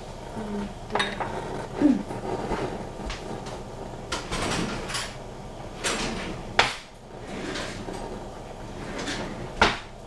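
Kitchen clatter: cookware and cupboards being handled, with scattered sharp knocks and clinks, the loudest about two, six and a half, and nine and a half seconds in.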